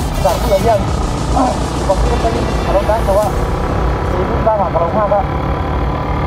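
Motorcycle riding along a road, heard as a steady low rumble of engine and wind on the microphone, with a person's voice coming in short bursts over it.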